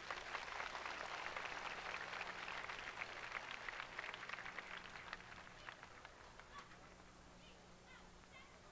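Audience applauding: dense clapping that thins out and dies away over the last two seconds.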